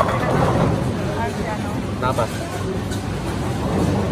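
Bowling alley din: a steady low rumble of balls rolling and lane machinery, with a few brief shouts and calls from people and a sharp clack near the end.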